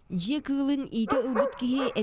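Dogs barking and whining in a quick run of short calls and yelps.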